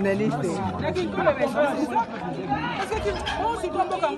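Speech only: a woman talking continuously into a handheld microphone, with other voices chattering around her.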